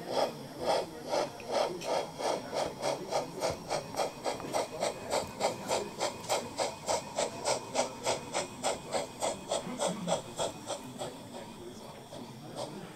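Sound module of a 1:32 Gauge 1 brass model of a Prussian T 9.3 (class 91.3-18) tank locomotive playing steam exhaust chuffs through its onboard loudspeaker as the model runs in reverse. The chuffs come about two a second, quicken to about three a second, then fade near the end.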